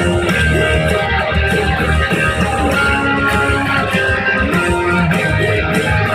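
Ibanez electric guitar playing along with a rock track with drums and bass, the full band sound running steadily with held guitar notes.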